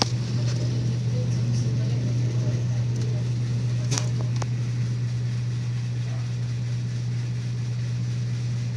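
A steady low hum from a running machine, with a few faint clicks about four seconds in.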